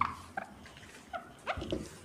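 A whiteboard being wiped clean: short rubbing strokes with brief squeaks, several in two seconds.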